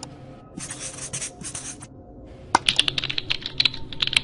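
A run of rapid, sharp clicks. There is a short, softer hissing patter about half a second in, then from about two and a half seconds a faster, louder string of clicks.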